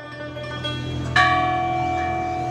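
A large clock-tower bell, the Shams-ol-Emareh clock's chime, strikes once about a second in and keeps ringing with a long, steady tone.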